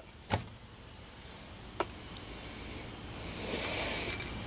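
Tubeless tyre plug insertion needle being yanked out of the tread in one quick pull, leaving the plug in place: a short sharp sound about a third of a second in, then a faint click near two seconds. A faint rushing noise swells near the end.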